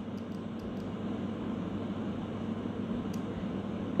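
Fan of a homemade workshop air-filtration box running steadily, drawing air through its filters: an even whoosh of air with a low hum.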